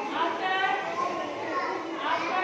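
Young children's high-pitched voices talking and calling out over one another.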